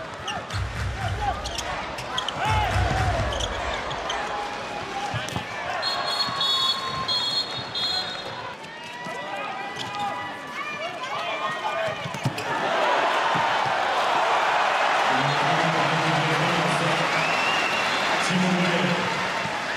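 Handball arena game sound: crowd noise with the thuds of the ball bouncing on the court. A high whistle sounds in short blasts about six to eight seconds in. The crowd grows louder from about twelve seconds in as France attacks the goal.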